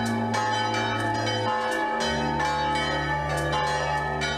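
Church bells ringing, several bells struck in overlapping succession, a fresh strike about every half second over a sustained hum.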